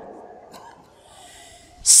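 A quiet pause with faint hiss, then a man's sharp, loud intake of breath into a close microphone near the end.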